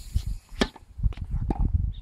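Tennis racket striking the ball on a serve: one sharp crack about half a second in, with fainter knocks following about a second later, over a low rumble.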